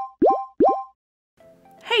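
Channel-intro sound effect: three quick cartoon 'bloop' pops, each a short upward-swooping blip, about 0.4 s apart. Faint stepped notes come in near the end.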